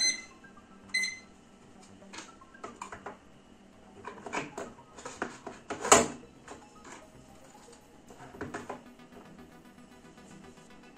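Small digital timer beeping twice as its buttons are pressed to reset it, a second apart, then clicks and knocks as it is handled and set down on the bench, the sharpest click about six seconds in.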